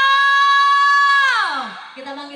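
A female dangdut singer holding one long high sung note with the band silent, then sliding down in pitch and fading out about a second and a half in.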